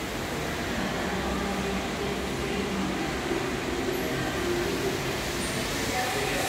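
Steady mall-lobby ambience: a constant hum and rush of air with faint, indistinct voices mixed in.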